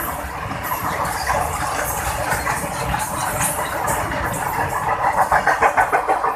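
Long freight train of open goods wagons running past at speed: a steady rumble and rush of steel wheels on rail. Near the end, as the brake van at the tail comes by, there is a fast rhythmic clatter of wheels over rail joints, about five beats a second.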